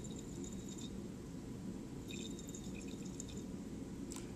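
Faint swishing of liquid swirled in a glass Erlenmeyer flask as base titrant runs in from a burette, heard in two short spells, near the start and again about two seconds in, over a steady low background hum.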